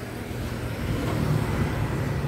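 Street traffic: motor vehicle engines running with a steady low hum over road noise.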